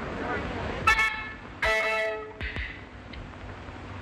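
Two toots of one musical note, a short one about a second in and a longer held one around two seconds, sounded as the trio readies to play.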